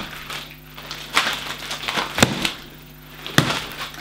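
Improvised flail of knotted rubber resistance bands being swung, with three sharp slaps about a second apart as the rubber ball end strikes and bounces back.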